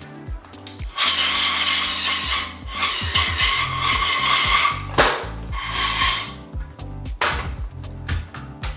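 Aerosol brake and parts cleaner hissing as it is sprayed onto a bicycle's rear sprocket cluster in three long bursts, to degrease it.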